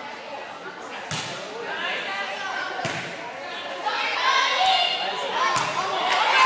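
Volleyball struck by hand, echoing in a gym: a serve about a second in, then a second hit about three seconds in and a third near the end. Crowd chatter runs underneath and swells into shouting from about four seconds on.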